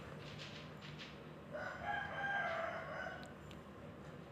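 A faint bird call: one drawn-out call of about two seconds near the middle, over a low steady hum.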